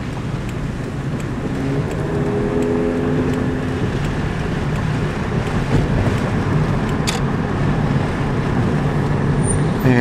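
Steady engine and road noise inside the cabin of a moving vehicle, with a brief steady hum about two seconds in and a single click about seven seconds in.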